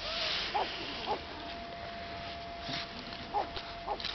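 Elderly mixed-breed dog whining in short high squeaks, four of them, as it is being petted.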